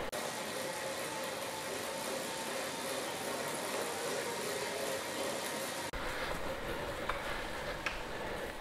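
Bike drivetrain spinning on a Wahoo KICKR CORE direct-drive smart trainer during a sprint at about 24–25 mph: a steady whir of the chain on the big chainring and small cassette cog. The trainer itself adds almost nothing, so the drivetrain is what is heard.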